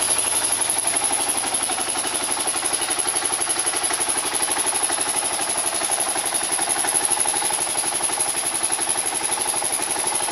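2005 Kawasaki KLR650's single-cylinder four-stroke engine idling with a steady, even beat.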